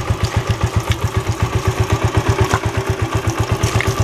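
Single-cylinder Jialing 125 motorcycle engine idling steadily with an even beat while water is splashed over it; it keeps running wet.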